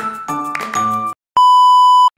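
Background music that stops about a second in, followed after a short gap by a loud, steady, high test-tone beep that lasts under a second: the tone that goes with a TV test-bar or no-signal screen, used as a glitch transition.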